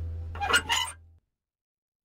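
The last guitar chord of the outro music rings out low and fades. About half a second in, two short squeaky sound effects follow, then the sound cuts off to silence.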